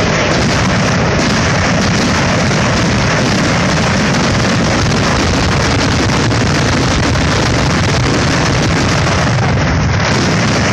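Fireworks display in a dense, unbroken barrage: shells and ground-launched effects going off so fast and so loud that the individual bangs run together into one continuous sound.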